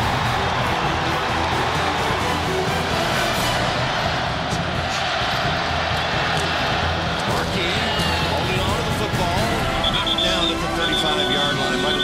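Football stadium crowd noise mixed with music. The crowd haze is thick at first and thins about halfway through, and the music's steady notes come through more clearly in the second half, with short repeated high notes near the end.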